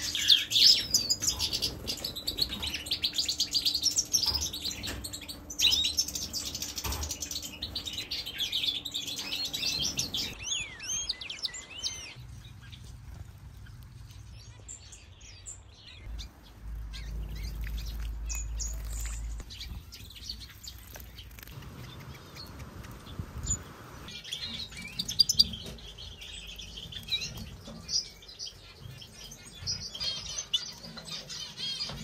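European goldfinches of the major race twittering and singing in fast, tinkling phrases. The song is dense and loudest over the first third, thins to scattered calls with a brief low rumble in the middle, and picks up again near the end.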